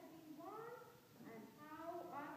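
Faint wordless vocal sounds from a young child, high and rising and falling in pitch, like a meow or a whine.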